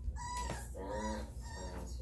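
Three-week-old Rhodesian Ridgeback puppy crying in short, high-pitched squeals and whines.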